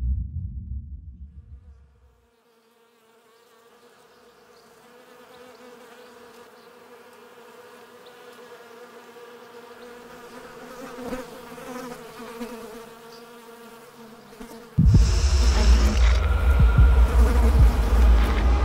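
A buzzing insect, gradually growing louder over about ten seconds. Near the end, a loud, low rumbling horror music drone cuts in suddenly and drowns the buzzing out.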